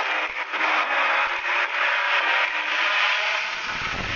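Ground fountain firework spraying sparks: a loud, steady hiss with a few short pops. A low rumble comes in near the end.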